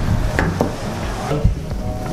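Knocks, thuds and scuffs of a large cardboard mattress box being lifted and shoved about, with three sharp knocks standing out, over faint background music.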